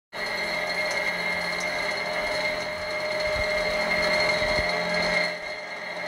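A steady mechanical whirring with a high whine in it, starting abruptly and dropping slightly in level near the end.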